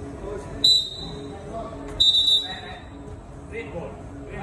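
Two short, shrill whistle blasts about a second and a half apart, the second a little longer, ringing out over distant shouting from players in a large echoing hall.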